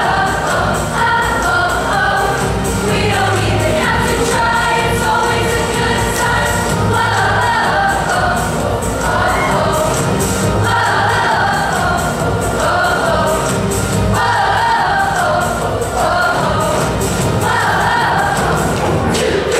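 Mixed-voice middle school show choir singing loudly in full chorus over an instrumental accompaniment with a steady low bass line.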